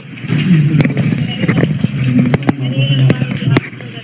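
Muffled police body-camera audio played back: a steady low rumble with a dozen or so sharp clicks and knocks scattered through it.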